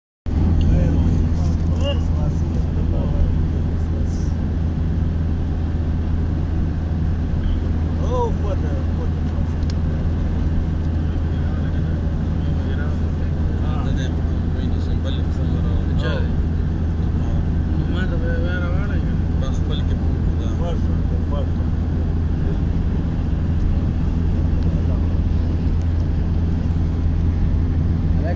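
Motorcycle engine running at a steady cruise, a constant low hum with wind and road noise over it.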